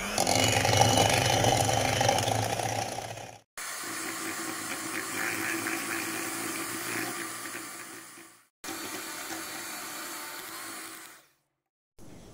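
Electric hand mixer running steadily, its beaters whipping cream in a bowl until it thickens. The sound comes in three stretches, each cutting off suddenly, the first the loudest.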